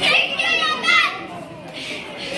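A child's loud, high-pitched shout lasting about a second, over the murmur of a crowded hall.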